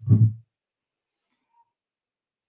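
A woman says a drawn-out "so", then dead silence for the rest, as if the audio is gated.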